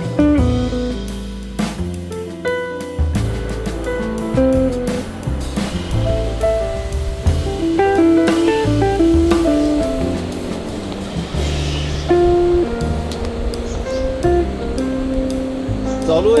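Background music: a guitar-led track with a bass line and a drum beat.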